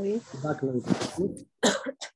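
Unclear speech with a cough.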